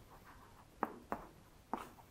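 Chalk writing on a blackboard: a faint scratch with three sharp taps, the first a little under a second in, as letters are stroked out.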